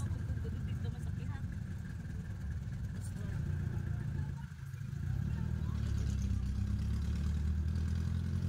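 Car engine and road noise heard from inside the cabin while driving, a low steady hum that dips briefly about halfway through and then runs fuller.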